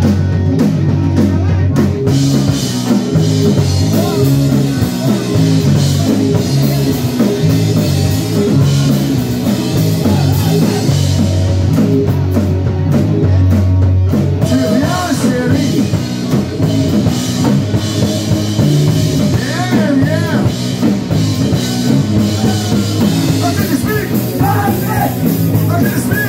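Live rock band playing loud, with a drum kit, electric guitar and bass driving hard throughout and some singing over it.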